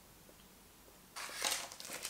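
A plastic snack wrapper crinkling as it is handled, starting about a second in after a quiet moment.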